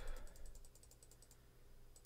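Faint, rapid, evenly spaced ticks from a computer mouse as a value is stepped up, about a dozen a second, stopping a little over a second in, over a low steady hum.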